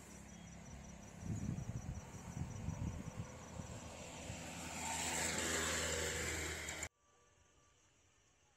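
A motor vehicle running and growing louder over the last few seconds, then cut off abruptly about seven seconds in, leaving only a faint background.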